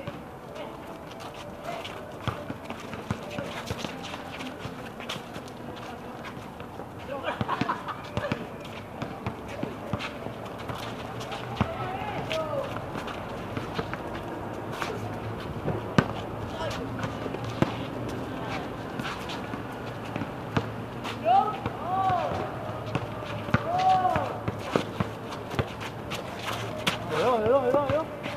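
Outdoor pickup basketball game: scattered sharp knocks of the ball and players' feet on the concrete court, with players' voices and short shouts, several of them in the second half.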